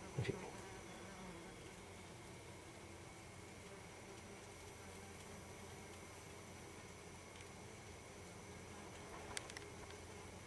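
Faint, steady buzzing of yellow jacket workers at their nest, with a small click at the start and two soft clicks near the end.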